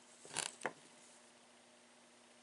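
Small metal parts of a radio-control car engine being handled during reassembly: a brief scrape about half a second in, then a sharp click.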